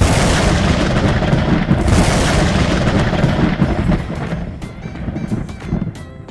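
Logo-reveal sound effect: a sudden loud boom with a rumbling, hissing wash that swells a second time about two seconds in, then dies away, with music notes coming back in near the end.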